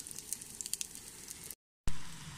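Burger patties sizzling in a frying pan, a soft hiss with many small crackles and pops. Near the end the sound cuts out abruptly, followed by a short sharp knock.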